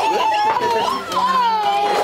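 A toddler's high-pitched voice holding one long, wavering vocal sound, with other children and adults chattering around it.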